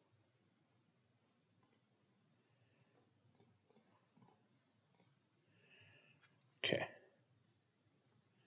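About five quiet, sharp computer mouse clicks spread over a few seconds, followed near the end by a short spoken "okay", the loudest sound.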